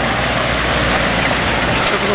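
Engine of a vintage American car running close by at low speed, a steady low engine note over street noise.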